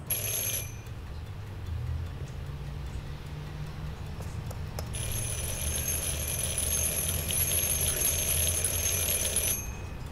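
Electric doorbell ringing: a short ring at the start, then a long ring of about four and a half seconds beginning some five seconds in.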